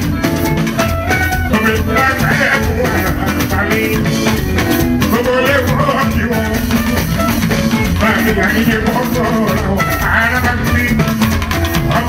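Live band music: drums, electric guitar and shakers play a steady, loud dance groove, and a man sings into a microphone over it.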